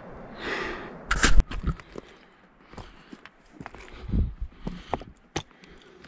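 Footsteps scrambling over loose shale and rock, with stones clacking and shifting underfoot in irregular knocks; the sharpest clack comes a little over a second in.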